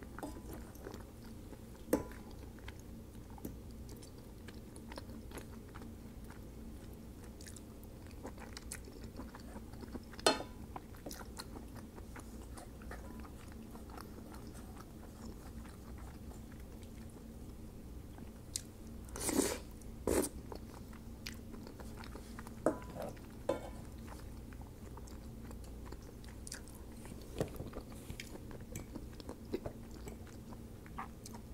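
Close-up chewing of soft pasta in a cream sauce, with scattered short clicks and scrapes of a fork and spoon against a metal pan. A louder cluster of these sounds comes about two-thirds of the way in.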